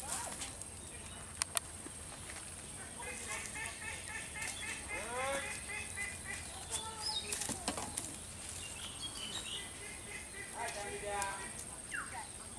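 Outdoor ambience of birds calling in rows of short repeated chirps over a steady high insect whine, with a few brief sharp clicks.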